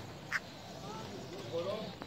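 Faint calls of Galapagos sea lions: a few short wavering calls in the second half. A single sharp click about a third of a second in is the loudest sound.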